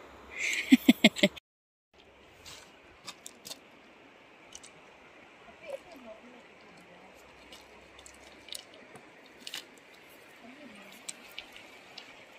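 Faint, steady rush of flowing river water with scattered small clicks and knocks. It opens with a short, loud burst of noise and sharp clicks that cuts off abruptly about a second and a half in.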